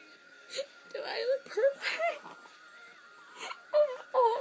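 A young woman crying: several short bursts of wavering, whimpering sobs with breaths between them.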